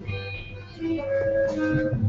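A live band playing, with guitar, heard at a distance.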